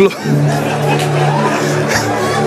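Background music: a low, steady chord held without a break under the pause in the sermon.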